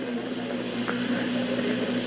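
Steady electrical hum and hiss of an old recording between spoken phrases, with a faint click about a second in.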